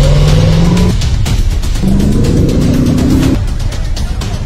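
Off-road rally truck's engine revving hard as it pulls away from the start on sand: the pitch climbs, drops for a gear change about a second in, climbs again and cuts off near the end.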